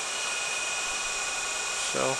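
A small electric motor whirring steadily, with a faint high whine held at one pitch.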